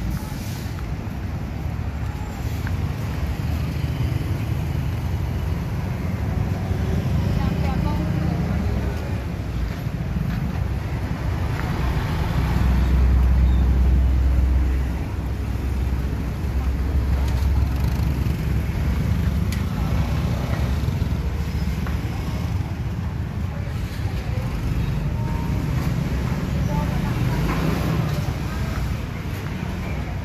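Busy street traffic with motorbikes running and passing, under a steady low rumble and background voices. A motorbike close by is loudest for a few seconds around the middle.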